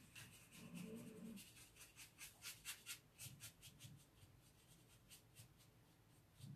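Faint, light scratchy strokes of a paintbrush working paint over carved wood, about three strokes a second, dying away near the end.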